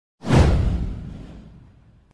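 A whoosh sound effect for an animated intro. It comes in suddenly, sweeps down from high to low into a deep rumble, and fades out over about a second and a half.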